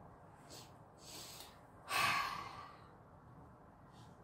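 A woman's breathy sigh about two seconds in, a single exhale that fades away, after a couple of faint soft breaths.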